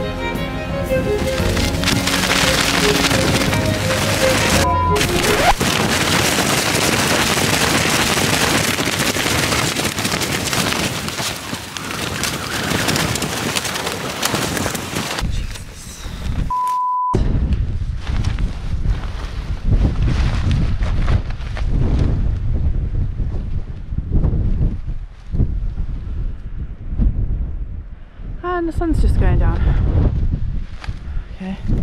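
Music over the first few seconds gives way to strong gusting wind blasting the microphone, loud and uneven, surging and dropping. The wind is the gale that has just snapped the tent's pole and flattened it. There is a short beep at a brief break about 17 seconds in.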